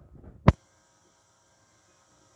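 Faint rustling, then a single sharp click about half a second in.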